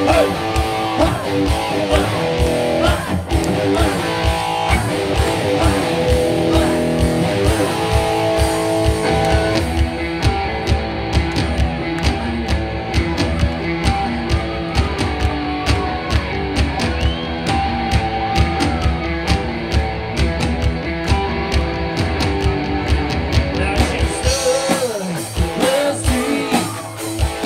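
Live band playing upbeat rock-pop music with electric guitar, keyboard and a steady drum beat. The bright, high part of the sound thins out from about ten seconds in until near the end.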